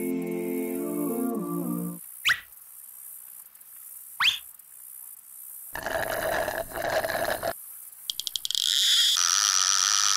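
Cartoon sound effects: a music cue stops about two seconds in, then two quick rising whistles a couple of seconds apart and a buzzy sound lasting about two seconds. Near the end comes a burst of rapid clicks like a fishing reel spinning out, then a steady high whizz as the cast line and hook fly through the air.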